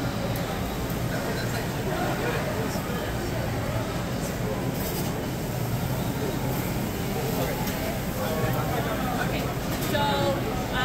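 Indistinct background voices in a busy grocery store over a steady low hum.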